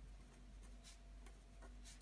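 Faint scratching of a felt-tip pen writing on paper, a few short strokes as a word is written out.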